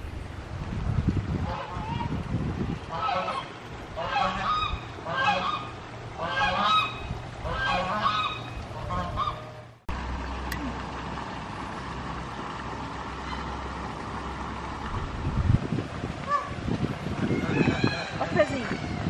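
Domestic geese honking, a run of short repeated calls over the first nine seconds or so. After an abrupt cut there is a steady low background noise, with a few more honks near the end.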